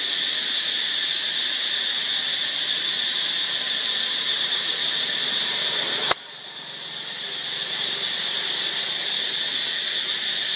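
Steady, high, shrill chorus of forest insects. About six seconds in there is a sharp click, and the chorus drops out suddenly, then swells back over about two seconds.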